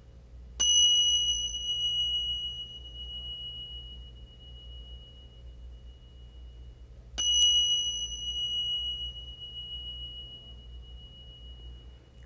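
Tingsha cymbals struck together twice, about six and a half seconds apart. Each strike rings out in a long, clear, high tone that slowly fades, and the ring of an earlier strike is still dying away at the start. The chime signals the return from the closing relaxation.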